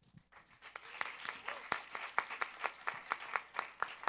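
Audience applauding in an auditorium: a few scattered claps that build into steady applause within the first second.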